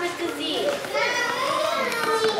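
Children's high-pitched voices, with long smoothly gliding pitch.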